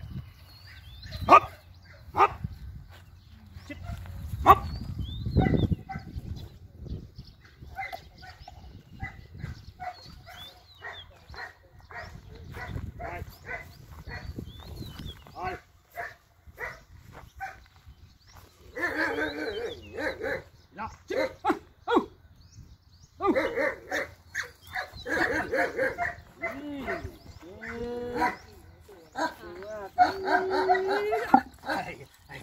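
German Shepherds barking in repeated bursts through the second half, with whining near the end.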